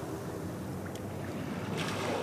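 Steady rush of ocean surf on a beach, with wind buffeting the microphone. A brighter hiss comes in near the end.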